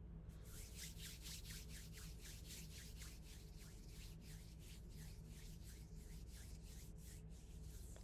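Hands rubbing together, faint, in a steady run of about three to four soft strokes a second, over a low steady hum.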